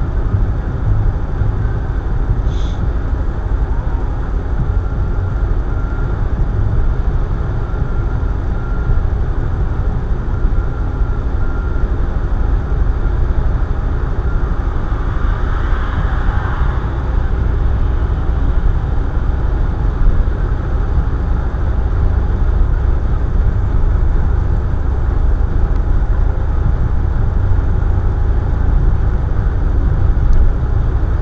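Steady low rumble of road and engine noise inside a moving car. About halfway through, a brief rushing swell rises and fades.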